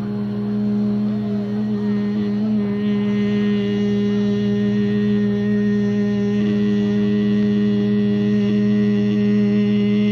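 A loud, steady hum made of several held tones that stay at the same level throughout without fading.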